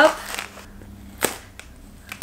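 Scissors cutting through brown packing tape on a cardboard box: faint snips about a third of a second in, then one sharp snip a little past a second in.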